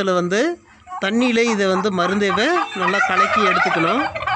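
A man talking over a flock of domestic turkeys clucking and calling around him; the bird calls grow busier in the last second or so.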